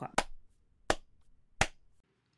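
Three sharp claps, evenly spaced about two-thirds of a second apart, played as a sync cue: the backing track gives them so that each participant's recording picks them up for lining up the parts.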